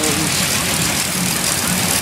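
Steady engine hum of carnival ride machinery under a loud, constant wash of midway noise, with a brief voice at the start.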